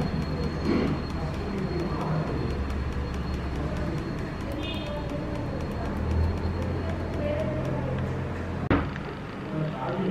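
Steady low hum of background noise with faint voices in the background and a thin high whine that stops about three-quarters of the way through. A single sharp click comes near the end.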